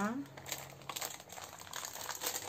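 Packaging being handled, with soft crinkling and a small click about a second in.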